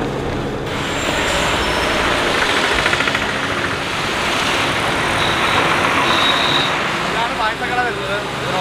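Road traffic noise: a steady rush of passing vehicles. A voice begins near the end.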